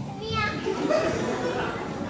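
Voices talking in a large hall, children's voices among them, with a brief high rising voice about a third of a second in.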